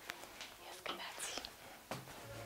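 A quiet pause between spoken phrases, holding only faint whispery voice sounds and breaths.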